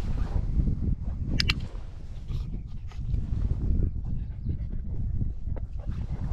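A dog-training clicker clicks once, a quick double snap about a second and a half in, marking a German Shepherd puppy's behaviour on the place board, over a steady low rumble.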